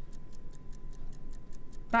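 Auction countdown clock sound effect ticking rapidly and evenly, about seven ticks a second, marking the closing seconds of a live auction.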